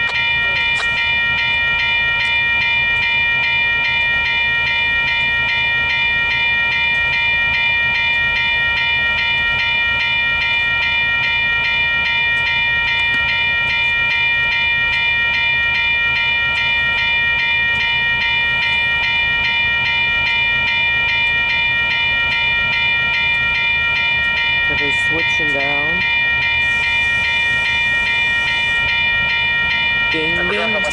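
Railway level-crossing warning bell ringing continuously, a steady high ringing over the low rumble of freight cars rolling slowly past through the crossing.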